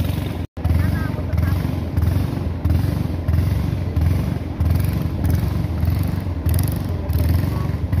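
A small boat's motor running steadily under way, a low pulsing drone with water and wind noise over it. The sound cuts out completely for an instant about half a second in.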